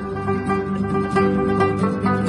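Rabab plucking a melody over acoustic guitar accompaniment, its notes ringing on between plucks.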